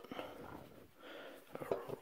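Faint handling noise as a banjo tuning peg is turned and a new string is wound onto it.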